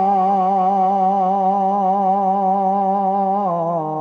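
A male naat singer holding one long note with a wavering vibrato; the pitch steps down near the end.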